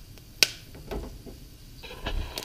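Popcorn kernels in hot oil in an uncovered pot starting to pop: one sharp, loud pop about half a second in, a few fainter pops after it, and pops coming thicker near the end.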